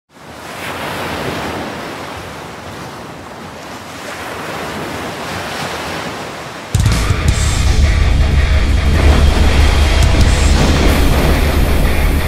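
Sound-designed intro: ocean surf washing and swelling. About two-thirds of the way in, a sudden loud, deep rumble cuts in and holds, with crackling noise above it.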